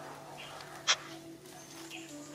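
A single short, sharp, high-pitched squeak from a newborn macaque about a second in, over faint steady background music.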